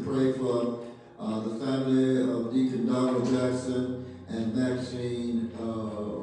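A man singing slow, drawn-out notes into a microphone, each note held for a second or more, with short breaks for breath about a second in and about four seconds in.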